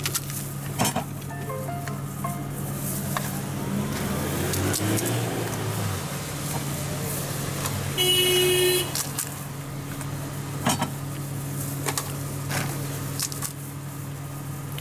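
Street traffic with a steady low hum, and a brief car horn toot about eight seconds in, the loudest sound. A few light clicks come from the food counter as the puri shells are handled.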